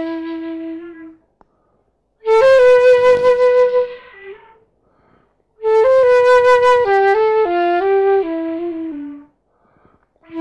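Solo concert flute playing slow, sustained phrases with short silences between them: a held note fading away about a second in, a short phrase a little after, and a longer phrase that steps downward in pitch near the end.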